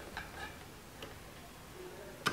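A few faint clicks and ticks from a sewing machine, about three in the first second, as the fabric is worked under the needle and presser foot.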